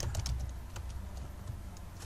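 Computer keyboard being typed on: a handful of light, irregularly spaced key clicks over a steady low hum.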